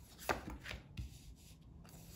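Oracle cards being handled and dealt from the deck onto a cloth-covered table: about three short taps and card-stock snaps in quick succession in the first second, then soft rubbing of cards.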